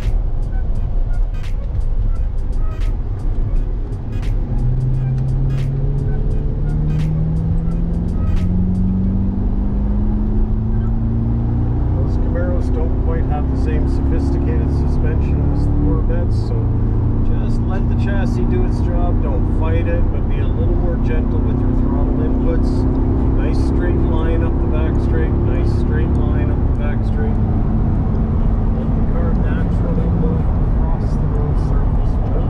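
C8 Corvette's V8 engine heard from inside the cabin under hard acceleration on track, its note climbing steadily for about twelve seconds, then dropping at a gear change about 16 seconds in and again near the end. Background music plays over it.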